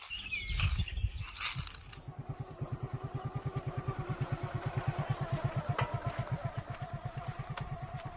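Tractor engine running with a steady low chugging beat, about eight pulses a second, setting in about two seconds in. A couple of sharp clicks come near the end.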